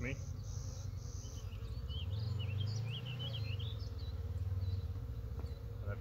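Honey bees buzzing steadily around an opened hive worked without smoke, so the bees are stirred up. A small bird chirps several times in the middle.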